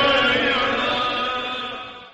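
Closing held note of a chanted noha lament, a long drawn-out tone without breaks, fading out steadily toward the end.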